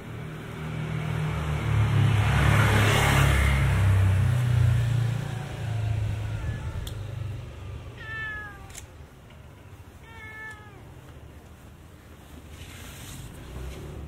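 A vehicle passes with a low rumble in the first few seconds. Then a cat meows twice, about eight and ten seconds in, each a short call falling in pitch.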